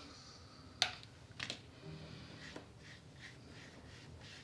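Faint, quiet brushing of a watercolour brush working wet paint across thick paper, with two small sharp clicks in the first second and a half.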